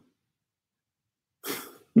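Dead silence for over a second, then near the end a man's short breathy burst through the mouth as he breaks into a laugh.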